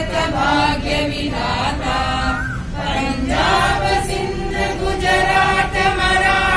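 A small group of voices singing together in unison, holding long notes and moving from note to note without a break.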